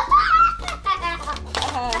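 A young child's excited, drawn-out vocalising over background music with a steady low bass line.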